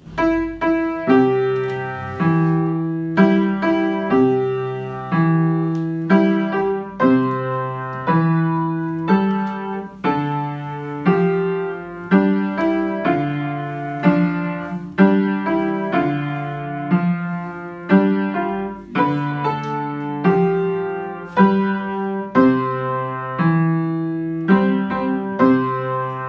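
Upright piano playing a lullaby at a steady, gentle pace: a melody over low bass notes, with a new chord struck about once a second, each note ringing and fading.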